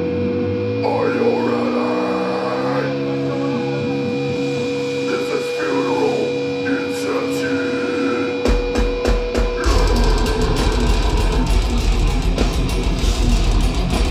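Live death metal band: electric guitars let ring over a steady held tone, then a few drum strikes about eight and a half seconds in, and the whole band comes in loud with drums and distorted guitars near ten seconds.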